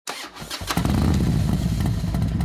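2019 Piaggio Liberty 150S scooter engine: a few clicks, then the engine sound comes in under a second in and runs steadily and loudly.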